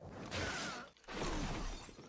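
Sound effects from an animated show's soundtrack: a body crashing into a shop front with glass breaking. It comes in two noisy bursts of about a second each.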